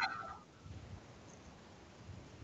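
Faint steady background noise of an online video call. A brief, faint sound with a few pitched tones comes right at the start and fades within half a second.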